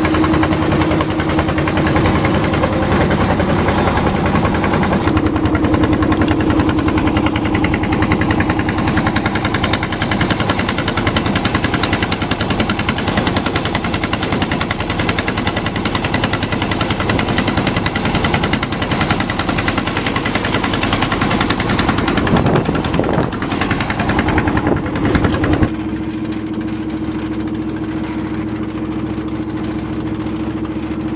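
Small wooden boat's engine running under way with a rapid, even chugging beat. About four seconds before the end it drops to a quieter, steadier run.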